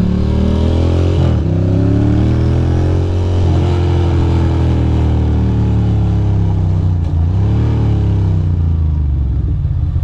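2006 Ducati Monster 620's air-cooled V-twin engine running under way, its pitch rising and falling several times as the throttle opens and closes.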